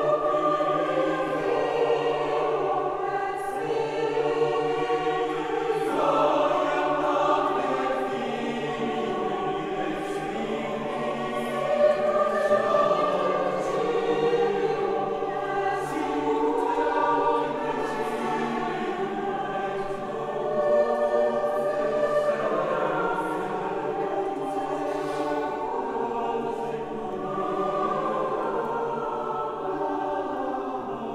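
Mixed choir of men's and women's voices singing a sacred piece a cappella, in the reverberant acoustics of a church.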